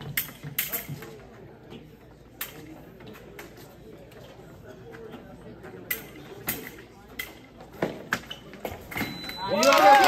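Sharp clicks and taps over a low murmur of voices in a hall, with sudden footwork and blade contact during a fencing bout. Near the end a short steady beep sounds, then a loud, pitched yell breaks out.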